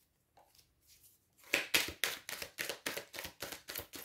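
Tarot cards (a Golden Wheel Tarot deck) being shuffled by hand: after a brief pause, a quick, even run of card slaps, about six a second, begins about a second and a half in.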